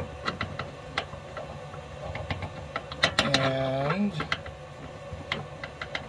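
Screwdriver turning a small terminal screw on a brass battery current shunt: irregular light metallic clicks and ticks as the bit works in the screw head.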